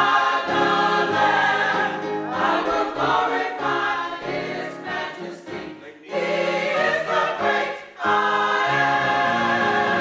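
Church choir of men and women singing together in sustained chords, with brief breaks between phrases about six and eight seconds in.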